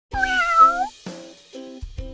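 One cat meow near the start, dipping and then rising at the end, laid over a short intro jingle of repeated chords with a drum beat.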